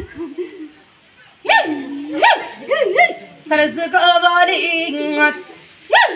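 Human vocal cries: a few sharp yelps that swoop up and fall back, starting about a second and a half in, then a long wavering wail held on one pitch.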